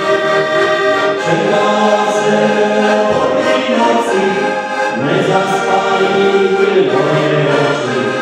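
Two heligonkas (Styrian diatonic button accordions) playing a folk tune together in sustained chords over a steady bass, with the chords changing every second or so.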